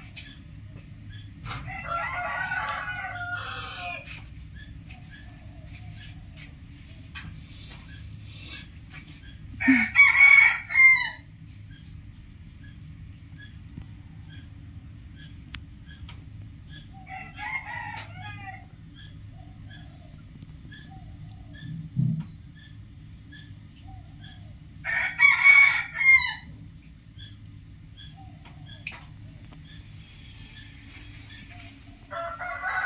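A rooster crowing several times, loudest about a third of the way in and again near the end, with quieter crows between. A steady low hum runs underneath.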